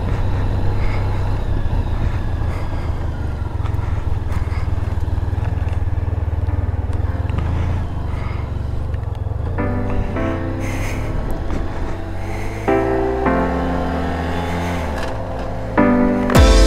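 Motorcycle engine running steadily at low speed as the bike pulls away along a lane: a continuous low rumble. About ten seconds in, music with held chords fades in over it.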